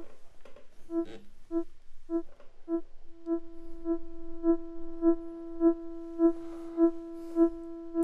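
Synth drone from a Graphic VCO, a single held note with a few overtones, pulsed by a VCA under the Mobula Mobular ROTLFO's pointy, slow-mode triangle output. The pulses come about twice a second and are really pointy. For the first three seconds they are short separate blips; after that the drone stays on beneath sharp swells.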